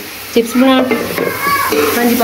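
Food sizzling as it fries in hot oil, with a voice carrying long held notes over it.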